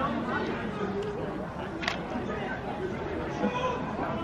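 Background chatter from spectators, several voices talking at once, with one sharp knock about two seconds in.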